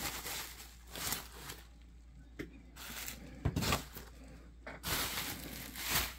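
Plastic bubble wrap being pulled off a boxed item and crinkling, in several short bursts of rustling with quieter gaps between them.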